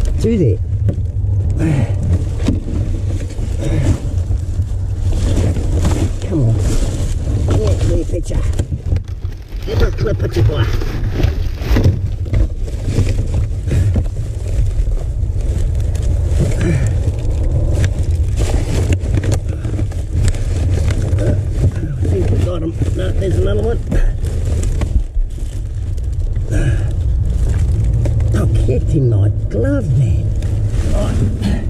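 Hands rummaging through rubbish in a dumpster, with plastic bags, cardboard and packing foam rustling and crinkling in frequent short clicks and knocks, all over a steady low hum.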